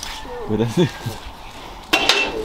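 A single sharp metallic knock near the end, with a short ring after it: a chrome trim strip being set down against a pickup's bed rail.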